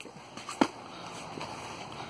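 A short knock about half a second in, over a steady background hiss: foam-padded sparring spears striking each other.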